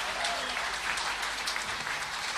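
Audience applauding in a hall.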